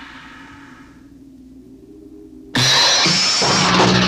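Horror trailer soundtrack. A crash rings away over the first second while a low drone slowly rises in pitch, then a sudden loud burst of sound hits about two and a half seconds in.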